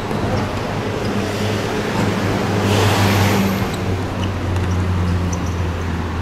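Steady low rumble of city road traffic, with a louder passing swell about halfway through.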